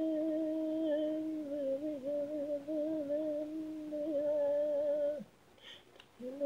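A single unaccompanied voice holds a long, steady note with slight wavers in pitch, stopping a little after five seconds in. A short intake of breath comes near the end.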